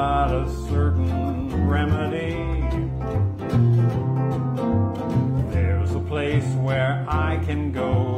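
Small acoustic country band playing. An upright double bass walks a bass line under strummed acoustic guitar, and a steel guitar plays sliding, wavering lines.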